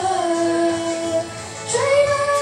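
A teenage girl singing into a handheld microphone, holding one long note, then starting a new, higher note near the end.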